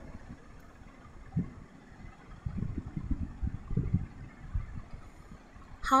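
A low, uneven rumble with a soft knock about a second and a half in.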